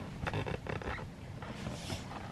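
Soft footsteps in socks on carpet close by: a few dull thuds with rustling, then a brief hiss near the end.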